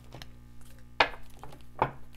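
Oracle cards being handled on a cloth-covered table: two sharp taps, about a second in and near the end, as a deck or cards are knocked or set down.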